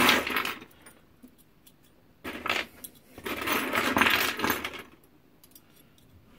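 Small copper and brass scrap pieces (pipe offcuts, fittings and rings) clinking and rattling against each other as hands rummage through a heap of them. There is a short clatter about two seconds in, then a longer jangle lasting about a second and a half.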